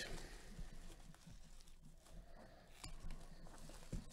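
Faint crinkling of plastic shrink wrap and a few light taps as gloved hands handle a shrink-wrapped trading-card box.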